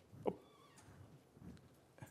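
A short wordless vocal sound from a man about a quarter second in, falling steeply in pitch, then a fainter murmur near the middle, over quiet lecture-hall room tone.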